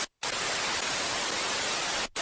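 Steady hiss of white-noise static, like a dead TV channel, laid on as the closing effect of the track. It starts after a brief dropout just after the start and cuts off suddenly at the end.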